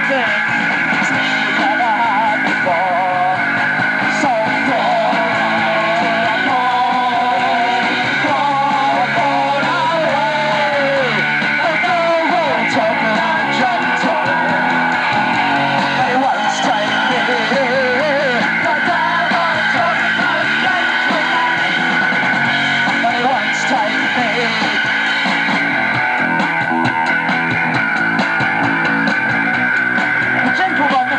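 A live punk rock band playing a song outdoors: electric guitars and drums with cymbals, loud and unbroken, as picked up by a camcorder microphone.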